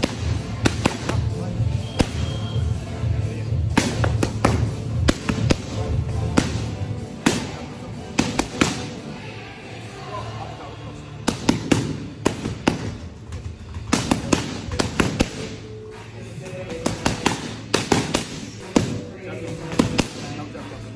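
Boxing gloves hitting focus mitts in quick, irregular combinations, a string of sharp slaps coming in bursts. A music track with a steady low beat plays under them.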